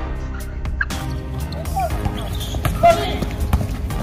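Basketball court sounds: sneakers squeaking sharply a few times on the hard outdoor court and the ball bouncing, over background music.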